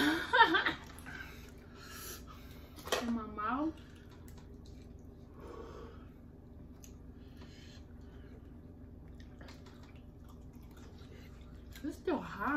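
A voice briefly at the start and again about three seconds in, then a quiet stretch of eating at a table with a few faint clicks of forks on food and plates.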